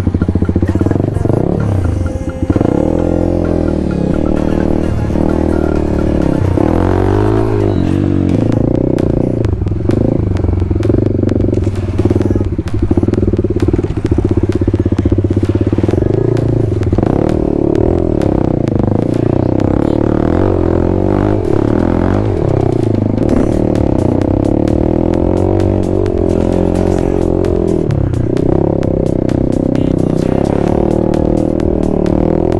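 Single-cylinder dirt bike engine running on a rough trail, its revs rising and falling with the throttle, under background music.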